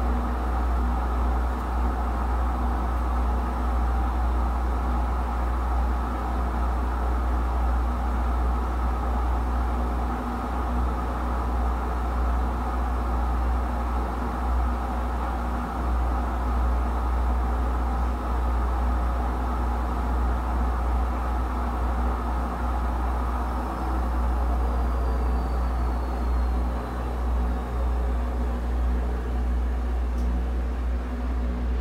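Whirlpool Duet Steam front-load washer spinning its drum at the maximum 1300 RPM spin speed: a steady motor hum and whir of the drum at high speed.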